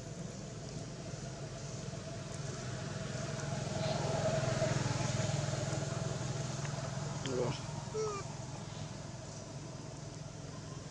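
A motor vehicle's engine running in the background, growing louder through the middle and fading again, with two short squeaks about seven and eight seconds in.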